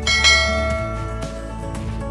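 Background music, with a bright bell chime struck about a quarter-second in and ringing out over roughly a second. The chime is the notification-bell sound effect of a subscribe-button animation.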